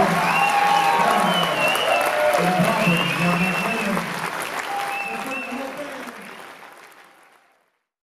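Audience applauding after a live jazz number, with voices over the clapping, fading out near the end.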